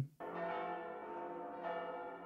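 Sustained bell-like tones from an anime soundtrack: a held chord of ringing tones sets in just after the start, and further tones join about halfway through.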